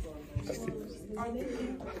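Speech over background music from a short video clip playing back, with a brief laugh at the very end.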